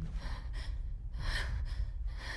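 A distressed woman breathing audibly in two breathy gasps, over a steady low hum.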